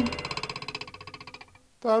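A rapidly pulsing electronic tone with several overtones, fading out over about a second and a half. A voice begins near the end.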